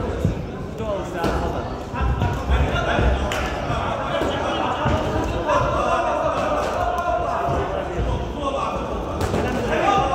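Voices calling out around a boxing ring, over scattered dull thuds from the boxers' gloves and feet on the ring canvas.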